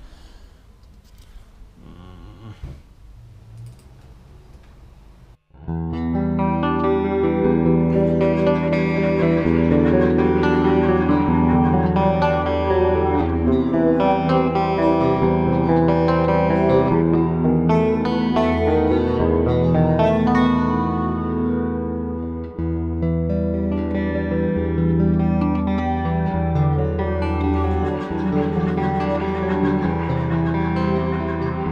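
Electric guitar played through effects, with distortion and chorus, in an instrumental passage with no singing. It starts suddenly about five seconds in, after a few seconds of faint sound, and then holds long, sustained notes.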